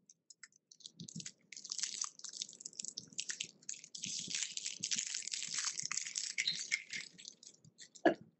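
Dense crackling and rustling close to the microphone, starting about a second and a half in and dying away near the end.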